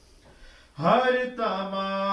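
A man's unaccompanied voice chanting an Urdu noha (lament). After a short pause, the voice comes in about a second in with an upward swoop and holds a long line.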